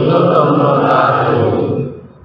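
Devotional chanting with music, fading out near the end.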